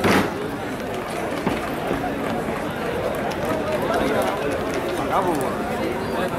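Indistinct shouts and chatter of players and spectators at an open-air rugby sevens match, over a steady background din, with one short loud sound at the very start.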